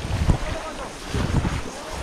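Wind buffeting the microphone in two gusts, near the start and about a second in, over sloshing water as people wade through a flooded field, with distant voices calling.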